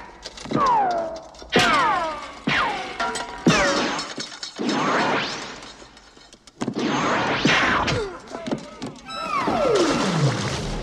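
Film shoot-out sound effects over a music score: a string of sharp hits, each followed by a falling whine, with things shattering. Near the end comes one long falling tone.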